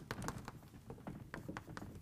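Chalk writing on a blackboard: an irregular run of light taps and short scratchy strokes as the letters are formed.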